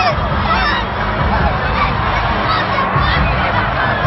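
Loud, dense hockey-arena crowd noise: many fans yelling and calling out over one another without a break.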